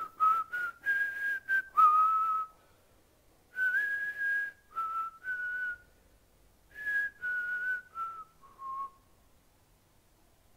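A man whistling a slow melody in three short phrases, the last phrase stepping down to a lower note and stopping about a second before the end.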